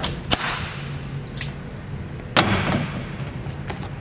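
A sharp click, then about two seconds later a louder knock with a short rushing tail: the latch and door of a fibreglass boat console being opened.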